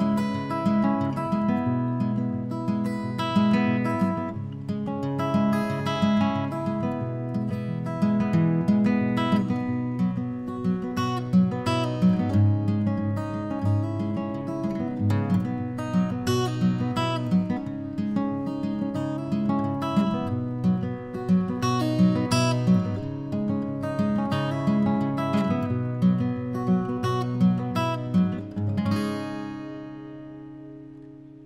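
Steel-string dreadnought acoustic guitar, capoed, strummed solo in a steady rhythm with no singing. A last chord near the end rings out and fades.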